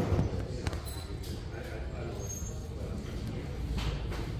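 Shopping cart rolling on a hard store floor: a steady low wheel rumble with a few light clicks and rattles.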